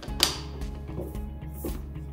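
Background music with a steady low bed, over which a sharp click sounds about a quarter second in and a fainter knock near the end, from the RB30 mag drill's feed handle being taken off and moved to the other side.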